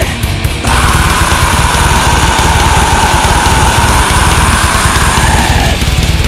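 Heavy, distorted blackened death metal played without vocals: dense guitars over fast drumming, with a long held note entering about a second in and dropping away near the end.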